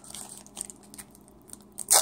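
A trading card pack's wrapper crinkling and crackling as it is worked open, with a loud sharp tear just before the end. The wrapper is proving hard to open.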